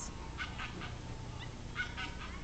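Quiet background hum with two faint, short animal calls, about half a second in and near the end.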